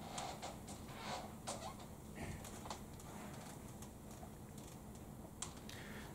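Quiet room with faint, irregular short clicks and taps scattered throughout.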